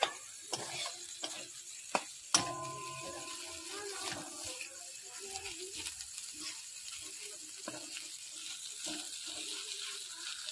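A metal spoon stirring and scraping a thick mashed cutlet mixture in a metal kadai over a gas flame, with a light sizzle. Several sharp clinks of spoon on pan fall in the first few seconds, the loudest about two and a half seconds in, then steady scraping.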